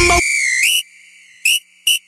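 A high whistle tone held for about half a second, sliding upward, then two short rising whistle chirps near the end, during a break in the music.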